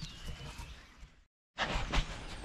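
Low, even background rumble with no distinct event, dropping out to dead silence for a moment about a second and a quarter in and then resuming.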